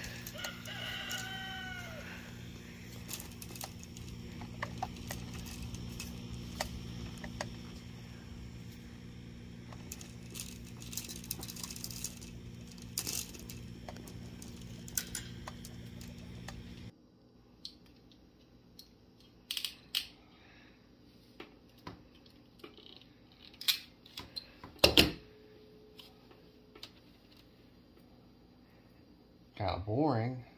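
A rooster crows once about a second in, over a steady low hum and scattered clicks and knocks. The hum cuts off suddenly about two-thirds through, leaving a much quieter background with occasional sharp clicks and handling sounds.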